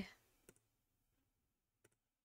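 Near silence with two faint single clicks, about half a second in and near the end: a computer mouse being clicked while the web page is scrolled.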